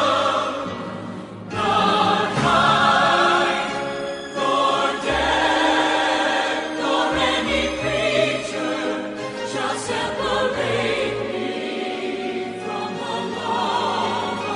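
Choral music: a choir singing long held notes, with a brief dip in loudness about a second and a half in.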